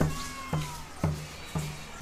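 Steady drum beat at about two strokes a second, with a thin high tone sliding down in pitch over the first strokes.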